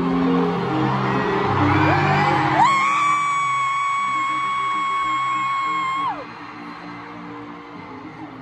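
Music playing over an arena's sound system, with a person's long, high-pitched scream that swoops up into one held note about two and a half seconds in and drops off about three and a half seconds later.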